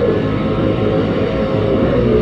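Hardcore punk band playing loud, dense music straight through, heard on a lo-fi audience recording.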